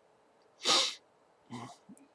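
A man's single sharp, loud burst of breath blown out through the mouth, lasting under half a second, then a shorter, fainter breath just before he speaks again.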